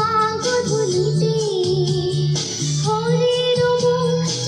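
A girl singing a melody with instrumental backing music underneath. Her voice breaks off briefly about two and a half seconds in, then returns on a long held note.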